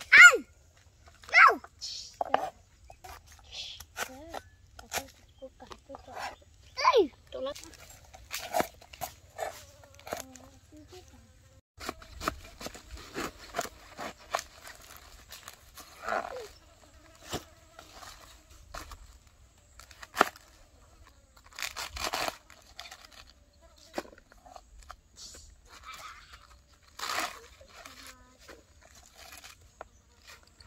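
Cleaver and kitchen knife chopping scallions and napa cabbage on a plastic cutting board: sharp knocks at irregular spacing, sometimes several in quick succession. A few short falling voice-like calls come near the start, the loudest right at the beginning, and one about seven seconds in.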